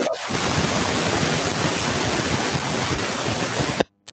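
Steady hiss of background noise picked up by a video-call participant's open microphone, cutting off suddenly just before the end.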